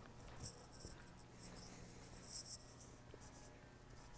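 Faint scuffing footsteps on a gritty concrete floor, a short irregular scrape every half second or so, over a low steady hum.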